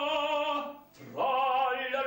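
Operatic spinto tenor singing long held notes with a wide vibrato. About a second in, he breaks off for a breath, then starts the next note with an upward slide.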